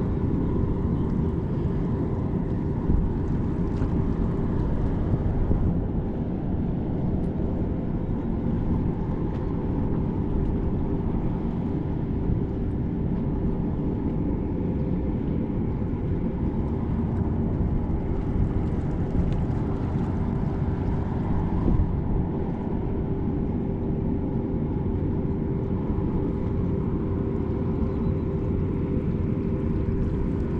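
A steady, low mechanical drone with a constant hum that does not change throughout.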